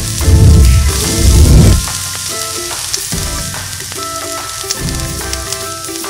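Marinated pork chops sizzling on a grill, a steady crackling hiss, under background music with deep swells about a second in and near the end.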